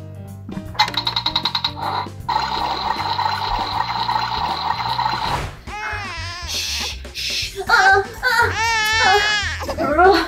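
An electronic toy stove's sound effect, set off by its button: about a second of rapid ticking, then a steady electronic tone and hiss for about three seconds, over background music. From about halfway through, a woman's high, wavering wail.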